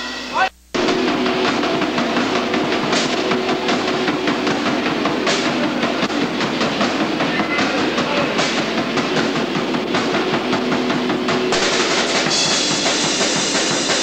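A live rock band plays loud and distorted, with fast, busy drumming. The sound cuts out abruptly for a moment about half a second in.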